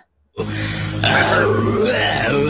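A sound clip from an online anime and manga soundboard starts about half a second in and plays on: a voice-like sound whose pitch wavers up and down over a steady low hum, louder after about a second.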